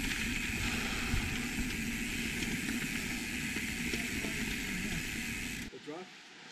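Wind rushing over the microphone and mountain-bike tyres rolling on a dirt road during a fast descent, as one steady rushing noise. It drops away suddenly shortly before the end.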